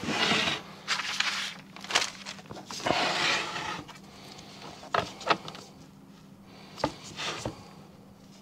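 Handling noise of a plastic golf disc and a stencil being slid and lined up on a board by gloved hands: scraping and rubbing for the first few seconds, then a few light taps and clicks.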